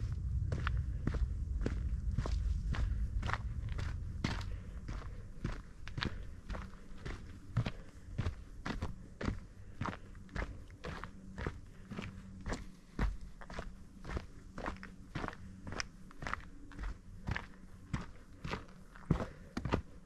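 Footsteps of a hiker walking steadily on a dirt forest trail, about two steps a second. A low rumble runs under the steps for the first few seconds.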